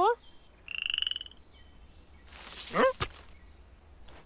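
Cartoon sound effects: a brief rising cartoon-voice cry at the start, then a rapid pulsed trilling frog croak about a second in. A whoosh and a second rising, wobbling cry follow near the three-second mark, ending in a sharp click.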